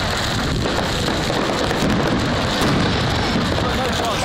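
Steady, dense crackling hiss from a large bonfire and a fireworks display, with no distinct bangs.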